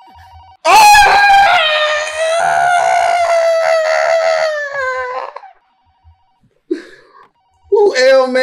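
A telephone ringing faintly, with a long high-pitched yell of about five seconds over it that sinks a little in pitch before cutting off. The ringing goes on faintly after the yell.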